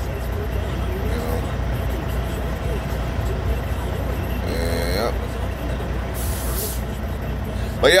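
Semi-truck's diesel engine idling steadily, heard from inside the cab, with a brief hiss about six seconds in.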